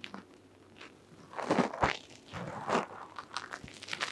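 Fingertips kneading and rubbing through dry hair on the scalp during a head massage, giving crackly rustling in irregular swells, with a few sharp crackles near the end.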